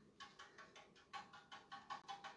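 Faint, irregular soft taps and brush strokes as a paintbrush dabs wet patina paint onto a sheet-metal star, several a second.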